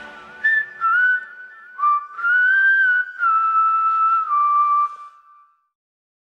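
Whistled melody of a few held notes, stepping up and down with short gaps, left alone after the full music mix stops; it fades out about five and a half seconds in.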